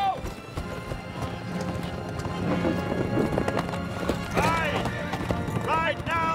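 Hoofbeats of many horses ridden together, with a horse whinnying about four and a half seconds in, over an orchestral film score.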